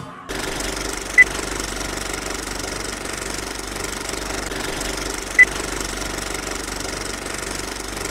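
Film projector running sound effect: a steady mechanical rattle with a low hum, and two short high blips, about a second in and again about five seconds in.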